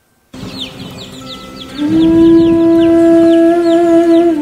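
A recorded dance-music track starts suddenly with a quick run of high, falling bird chirps, about five a second. About two seconds in, a loud, held wind-instrument note with a conch-like horn tone joins and wavers slightly near the end.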